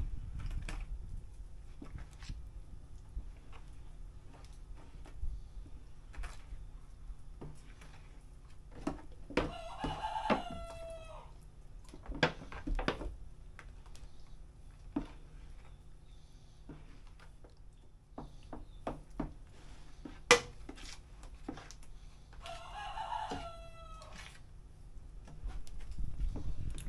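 A rooster crowing twice, about thirteen seconds apart, each crow a drawn-out call with a falling end. Under it come light scattered clicks and scrapes of a spoon stirring pancake batter in a plastic bowl.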